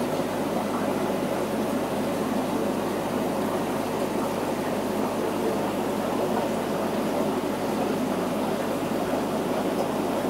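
Steady, unbroken bubbling and rushing of aquarium aeration: an airlift filter and air pumps running, with a low hum underneath.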